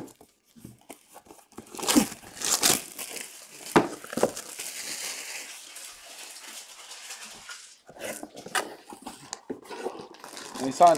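Plastic packaging being crinkled and torn open by hand: a few sharp crackles, a stretch of steady rustling, then more crackling near the end.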